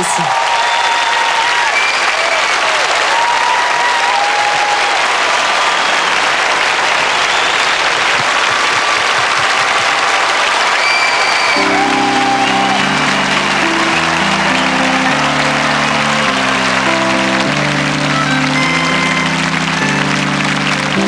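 Large concert audience applauding and cheering, with short whistles and shouts above the clapping. About halfway through, a band starts playing a slow introduction of sustained chords under the applause.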